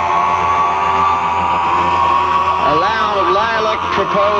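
Electronic music: a sustained synth chord held over a steady low drone, with a man's half-spoken vocal coming in about two and a half seconds in.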